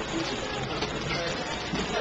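Indistinct background chatter of several people talking at once in a meeting room, with no single clear voice.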